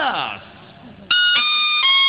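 A spoken voice trails off, then about a second in a melody of steady, held notes starts abruptly on a sustained instrument, stepping from one pitch to the next: the musical accompaniment of a wayang kulit performance coming in.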